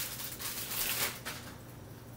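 Crackly rustling handling noise from a whole raw chicken and its wrapping being worked by hand, dying down about one and a half seconds in.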